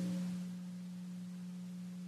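Steady low electrical hum on the recording: one constant pitch with a few fainter higher tones, easing slightly in level in the first half second.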